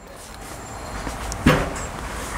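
A low rumbling background noise that slowly swells, with a single sharp knock about one and a half seconds in.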